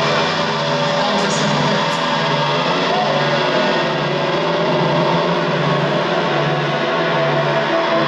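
Live goth/post-punk band playing an instrumental passage with no singing, carried by a steadily pulsing bass-guitar line over sustained keyboard and guitar parts.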